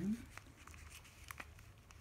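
Faint crinkling and a few light, scattered clicks from a clear plastic orchid pot with its plastic label being handled and turned.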